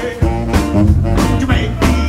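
Live rockabilly band playing: a singer over electric bass, electric guitar, saxophone and drums, with drum hits on a steady beat.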